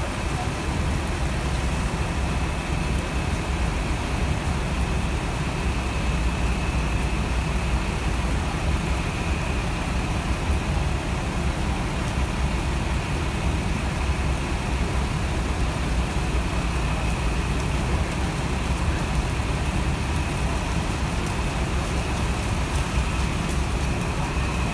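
Steady rain hissing on wet pavement over a continuous low rumble of idling buses and traffic, with no single event standing out.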